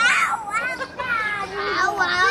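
Young children's voices at play: high-pitched, wordless calls and babble, several overlapping, with a lower voice joining near the end.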